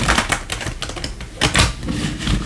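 A deck of oracle cards being riffle-shuffled by hand: a rapid flutter of card edges snapping past each other, then a second riffle about a second and a half in.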